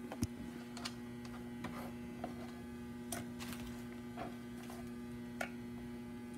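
Faint, irregular small clicks of a wire whisk stirring egg and chopped vegetables in a plastic bowl, over a steady electrical hum.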